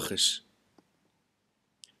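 The tail of a man's spoken sentence, then a pause of near silence broken by a faint click just before he speaks again.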